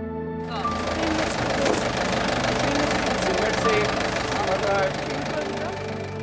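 Loud, steady road and engine noise of a moving truck, starting about half a second in, with indistinct voices and soft background music underneath.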